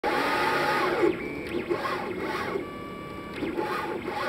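Stepper motors of a Rostock delta-robot 3D printer driving its carriages through quick moves. They make a whine of steady tones that jump in pitch from one move to the next, louder in the first second, with short chirps as the moves change.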